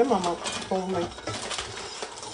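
Laughter for about the first second. Then a wooden spatula scrapes and stirs semolina being toasted in melted butter in a pan.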